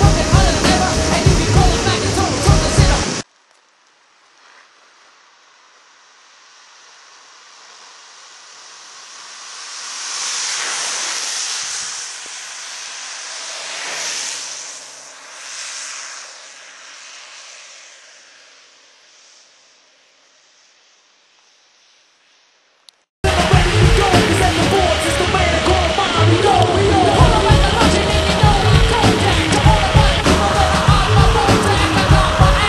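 Background music, which cuts out about three seconds in. A quiet rush of longboard wheels rolling on asphalt then swells, peaks twice and fades away as a rider passes. The music comes back suddenly near the end.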